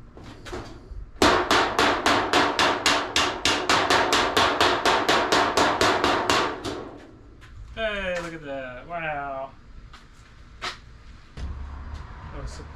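Fast, even hammer blows on sheet metal, about five a second for some five seconds, each with a bright metallic ring, as a bend is worked into the sheet by hand. A single lighter tap follows a few seconds later.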